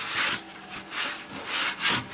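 A cloth rag rubbing over the oily metal underside of a vehicle in several quick wiping strokes.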